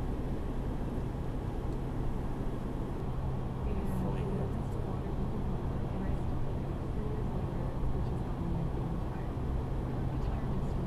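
Steady road and engine noise inside a car cruising at highway speed: a low drone with tyre hiss.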